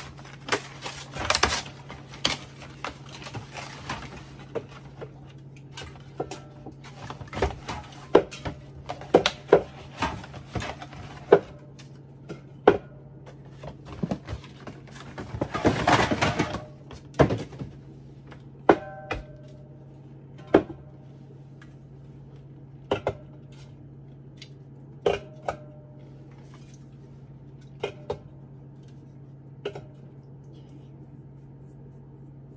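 Aluminium soda cans being set onto wooden pantry shelves and knocking against one another: a string of sharp clinks and taps, some ringing briefly, busiest in the first half and sparser later. About sixteen seconds in there is a longer rustling, scraping stretch.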